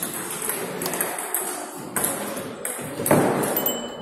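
Table tennis ball clicking off bats and table in a rally, a string of sharp pings echoing in a large gym hall, with a louder, fuller sound about three seconds in.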